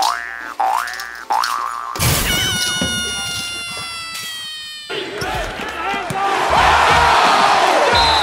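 Cartoon 'boing' sound effects: springy rising boings repeating about every two-thirds of a second for the first two seconds. Then comes a sustained ringing tone of several pitches that slowly sags for about three seconds, and a loud, noisy stretch follows near the end.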